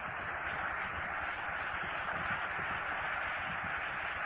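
Steady hiss and low room noise of an old lecture tape recording, with no speech.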